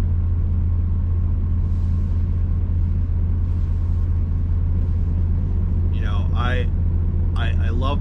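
Steady low drone of an idling semi-truck diesel engine, heard from inside the sleeper cab.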